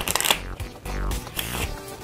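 A deck of Bicycle playing cards being shuffled by hand: a quick burst of rapid card clicking in the first half-second, then softer handling of the cards, with background music.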